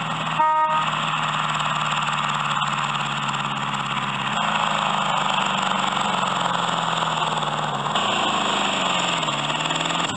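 A Technotots jeep kiddie ride's recorded sound effects: a short horn toot about half a second in, then a steady engine drone whose pitch dips and rises again near the end.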